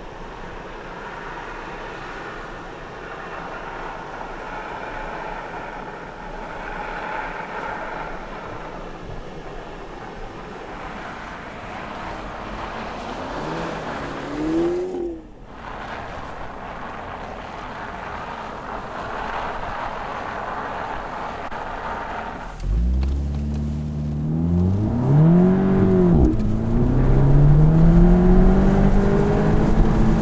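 Audi S3 Cabriolet's turbocharged 2.0-litre four-cylinder engine driving on snow. For the first half it is heard from a distance with tyre noise, with a brief rev rising and falling about halfway through. Near the end the engine is suddenly much louder and close, revving up, dipping, then climbing again.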